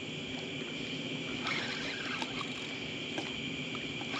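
Steady high chirring of evening insects, with faint scattered clicks and water sounds as a hooked channel catfish is reeled in on a spinning reel.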